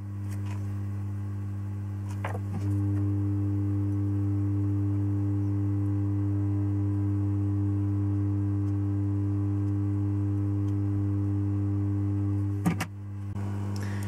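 Hot-air rework station blowing over a TV main board to desolder its SPI flash memory chip: a steady pitched hum that gets louder about two and a half seconds in and cuts off with a click near the end.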